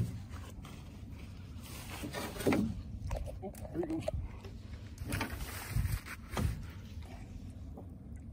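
Jugline being hauled in by hand over the side of an aluminum jon boat: soft water sloshing off the line, a steady low rumble, and a few brief knocks and rustles.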